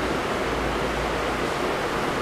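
A steady hiss with no distinct event in it: the room tone and recording noise heard in a pause between spoken phrases.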